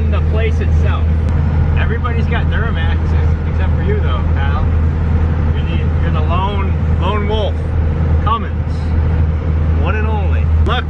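Diesel pickup truck heard from inside the cab while driving: a steady low drone of engine and road noise, with people talking over it.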